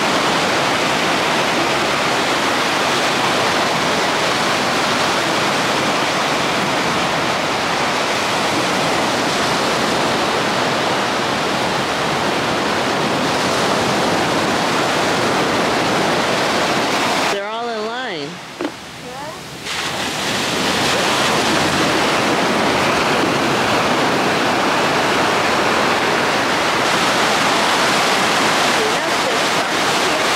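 Ocean surf breaking and washing up a sandy shore: a loud, steady rush of water. About two-thirds of the way through, it drops away for about two seconds, leaving only a faint wavering tone.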